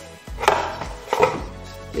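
Knocks and rattles of a loosened school-bus seatbelt bracket and its plastic cover being handled, two short clatters about half a second and a second and a quarter in, over quiet background music.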